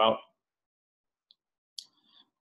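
The end of a spoken word, then near silence broken by two faint, brief clicks, the second a little before the end.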